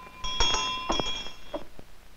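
A school hand bell rung with two strokes, its clear ringing dying away about a second and a half in.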